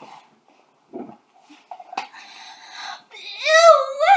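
A boy yelping: one high, wavering cry near the end, rising and falling in pitch, after a few faint rustles.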